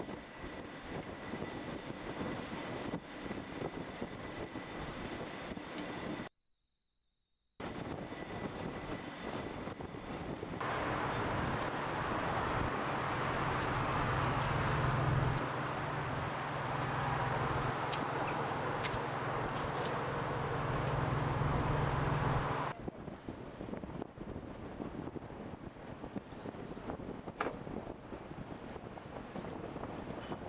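Wind buffeting the microphone on the deck of a moving tour boat, over the boat's engine and water rushing past the hull. The sound cuts out briefly a few seconds in. In the middle there is a louder stretch with a steady low hum.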